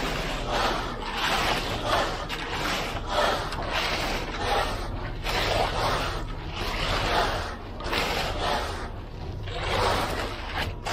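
Long straightedge screed board being sawed back and forth across wet concrete: a rhythmic scraping about twice a second, over a low steady hum.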